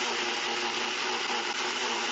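NutriBullet Pro 900-watt personal blender motor running steadily at full speed, with a constant high whine, blending a thin honey mustard dressing of honey, mustard, oil and seasonings.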